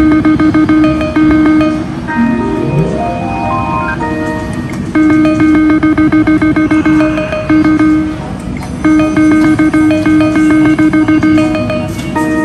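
Video keno machine's electronic game tones, played at top speed: quick runs of repeated beeps as the numbers are drawn, in stretches of a couple of seconds, with a stepwise rising run of tones about two to four seconds in.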